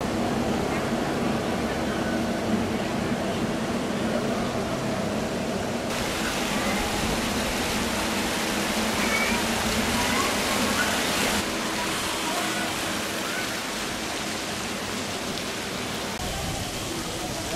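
Fountain jets splashing in a steady rush, with faint distant voices.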